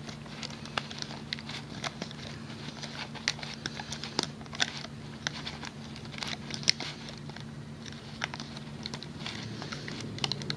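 Irregular small clicks and scratches of a metal hook catching rubber bands and pulling them over the plastic pegs of a Rainbow Loom, with a low steady hum underneath.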